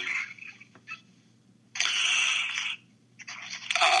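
A person's breath, about a second long, loud and close to the microphone, midway through. A shorter, fainter intake of breath follows just before a voice says "uh".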